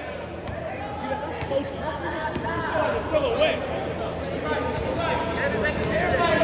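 Basketball dribbled on a hardwood gym floor, with men's voices talking and calling out throughout.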